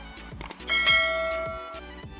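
Two quick clicks, then a bright bell-like notification chime about two-thirds of a second in that rings and fades away over about a second, from a subscribe-button animation, over background music.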